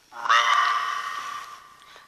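Ghost-box (spirit box) app playing through a phone speaker with reverb: one long, voice-like tone at a single held pitch. It starts suddenly and fades out after about a second and a half.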